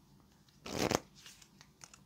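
Playing-card-sized tarot cards being shuffled or handled in the hands: one soft rustle lasting about half a second, a little past the start.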